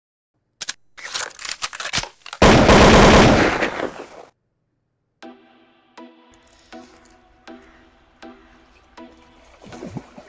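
Intro sound effect: a string of rapid sharp cracks building into a very loud, dense burst lasting about two seconds. It cuts off, and a second later music with a steady beat about every three-quarters of a second begins.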